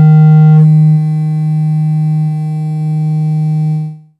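Church organ holding one loud, sustained chord over a strong low note; its upper notes change about half a second in, and the chord cuts off just before the end.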